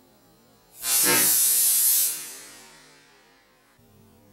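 Compressed-air launcher charged to about 120 psi firing a bamboo skewer: a sudden loud rush of air about a second in, lasting about a second, then fading away.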